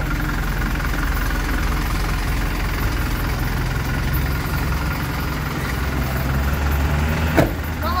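Hino 500 truck's diesel engine idling steadily, growing louder about six seconds in. A short, sharp sound comes near the end.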